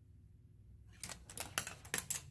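Steel ball rolling and clattering down the cascading plastic slides of a LEGO Technic marble-run structure. A quiet first second, then a quick run of sharp clicks and rattles.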